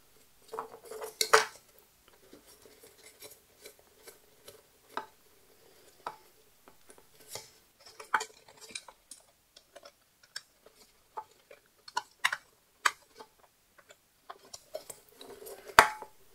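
Small nylon standoffs being fitted onto nylon screws through a cardboard Pringles can: scattered light clicks, taps and handling noise, with a sharper clatter about a second in and single knocks around the middle and just before the end.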